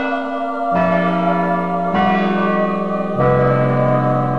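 Bell music: deep bell notes struck one after another, about one every second and a quarter, at changing pitches, each ringing on under the next.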